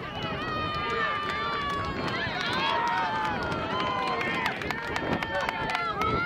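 Several voices shouting and calling over one another outdoors, with no clear words, as players and onlookers yell during lacrosse play; a few sharp clicks come in the later seconds.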